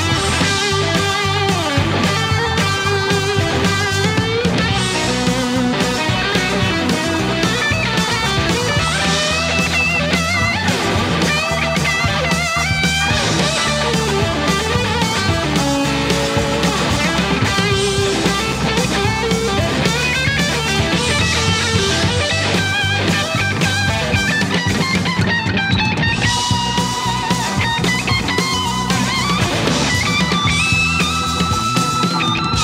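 A 1980 Greco Super Real Les Paul-style electric guitar with PAF-style humbuckers, played lead in a rock jam, with melodic lines and string bends.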